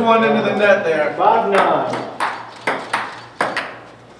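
Ping pong ball in a rally, clicking sharply off the paddles and table about every half second.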